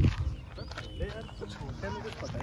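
Faint voices in the background over a steady low rumble of wind on the microphone.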